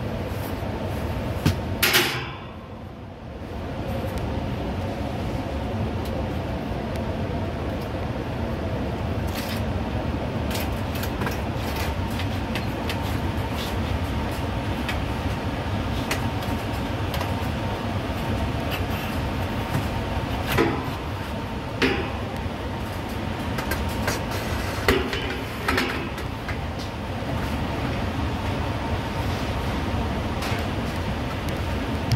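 Fan coil unit filter panels and sheet-metal frames knocking and scraping as they are handled and slid along the unit's rails. There is a sharp knock about two seconds in and several more knocks in the second half, over a steady mechanical hum.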